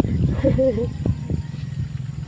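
Low, steady rumble of flowing water, with a short vocal sound about half a second in.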